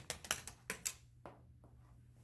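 Steel ball rattling down plastic LEGO Technic beams and slides: a quick, irregular series of sharp clicks and knocks as it drops from one level to the next, ending about a second and a half in.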